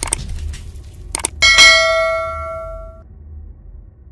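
Intro-animation sound effects: a couple of quick clicks, then a single struck metallic bell ding that rings out and fades over about a second and a half, over a steady low rumble.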